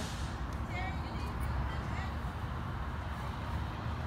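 Steady low outdoor background rumble, with a few faint short chirp-like sounds about one to two seconds in.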